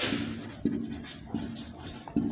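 Marker pen writing on a whiteboard, about three short strokes.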